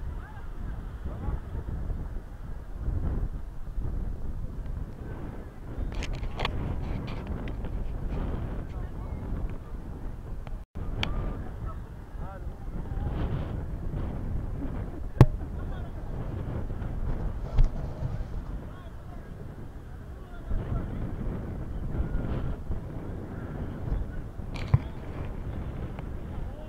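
Wind rumbling on the camera microphone, with faint, indistinct voices and a few sharp clicks.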